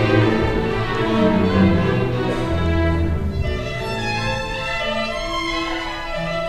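Symphony orchestra playing live, strings carrying sustained, slowly changing notes, a little softer in the second half.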